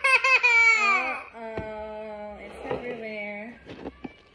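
A toddler laughing in a high voice for about the first second, then a lower adult voice laughing more softly, with a couple of light knocks on the counter.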